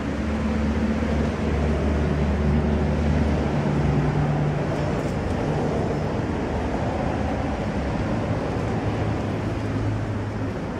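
Steady rumble of road traffic, with a low hum of engines.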